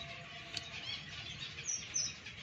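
Small cage finches chirping in an aviary: a scatter of short, high chirps and twitters, some dropping in pitch, with one sharp click about a quarter of the way in.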